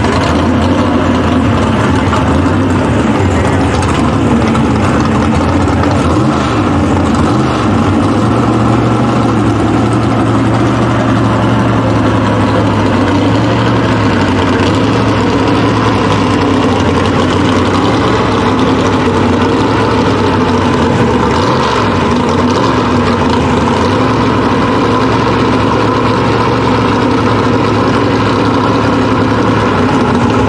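A gasser drag car's race engine idling loudly and steadily, its note wavering briefly a couple of times.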